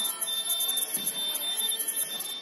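A steady high-pitched tone held throughout, over faint voices in a large hall.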